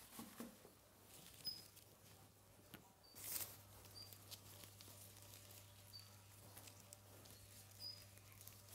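Faint, quiet room with a small caged bird giving a few short, high peeps a second or two apart, and a brief rustle about three seconds in.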